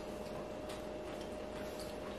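Faint, irregular clicks of someone chewing a mouthful of pizza, over a faint steady hum.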